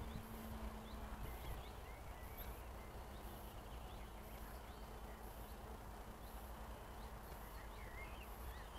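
Faint open-field ambience: scattered short bird chirps and a high chirp that repeats about twice a second, over a faint steady hum that fades out near the end.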